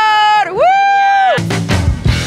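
A woman's high-pitched cheering yell, held long in two steady stretches with a short break about half a second in. It ends about a second and a half in, when rock music with drums cuts in.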